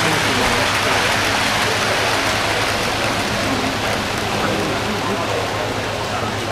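Steady hubbub of a crowd of visitors: an even, continuous hiss of many overlapping voices and movement, with a faint low hum underneath.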